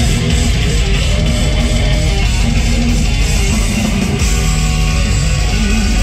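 Live thrash metal band playing at full volume through a large PA: heavily distorted electric guitars, bass and drums in a dense, steady wall of sound.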